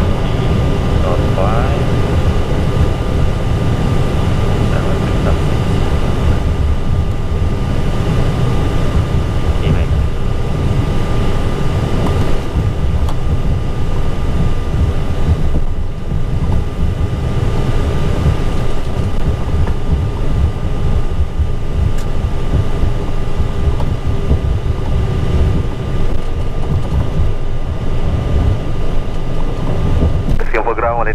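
Airbus A320 cockpit noise while taxiing: a steady, loud low rumble from the jet engines at taxi thrust and the rolling airframe, with a few constant high-pitched tones running through it.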